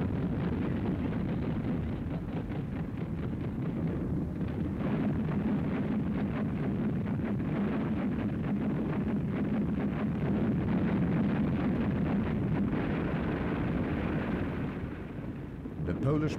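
Continuous rumble of a naval and artillery bombardment, a dense low roar with many small crackling reports running through it. It grows a little louder about two-thirds of the way in.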